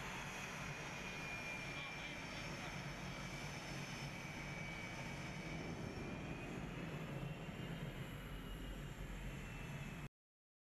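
Twin jet engines of a Blue Angels F/A-18 running at taxi power as the jet rolls past: a steady rush with a thin high whine that sags a little in pitch and comes back up.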